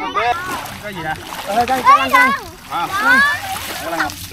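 Several voices talking and calling out over the steady splash and slosh of water.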